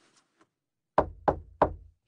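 Knuckles knocking on a door: three quick knocks, about a third of a second apart, starting about a second in.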